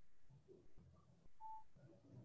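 Near silence, with a faint short electronic beep about one and a half seconds in.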